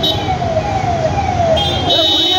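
Electronic siren on a motorcade escort vehicle, sounding a rapid series of falling sweeps, about two a second, over the low running of the convoy's engines. A steady high tone joins near the end.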